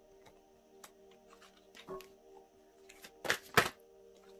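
Soft background music with steady held notes. Oracle cards are handled with a few light clicks, then there are two sharp slaps of cards on the table near the end, the loudest sounds.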